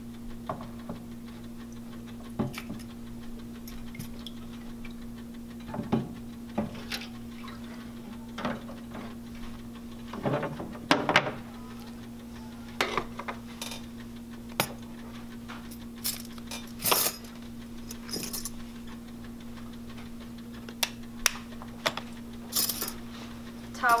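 Rinsed metal dental instruments clinking and rattling as they are tipped from the ultrasonic cleaner's basket onto a towel and arranged by hand: irregular light clinks and clicks, a few louder ones, over a steady low hum.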